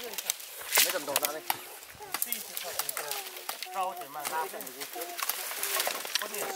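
Wooden sticks and firewood bundles knocking and clattering in a series of sharp knocks, the loudest about a second in, as they are lifted and carried, with voices talking in the background.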